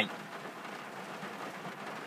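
Steady hiss of heavy rain falling.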